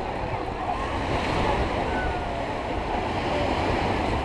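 Surf breaking on a beach, with the distant chatter of a crowd and wind rumbling on the microphone.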